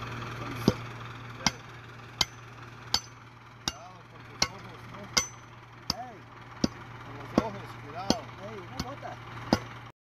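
Steel bar pounding hard ore in a small iron mortar: about thirteen sharp strikes at an even pace, a little faster than one a second, over a steady low hum. The strikes stop abruptly near the end.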